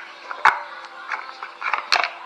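Handling of a small cardboard accessory box and a charging cable: two sharp knocks, one about half a second in and one near the end, with light tapping and rustling between.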